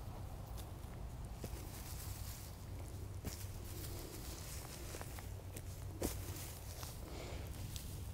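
Faint footsteps on garden soil and mulch, with a few soft clicks and rustles, the clearest about six seconds in, over a steady low outdoor hum.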